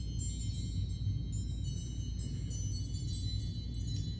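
A timer alarm playing a wind-chime tone: many high, bell-like notes overlapping and ringing on, marking the end of a one-minute meditation.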